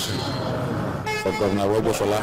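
A man speaking into a microphone, with a brief, steady, horn-like toot about a second in.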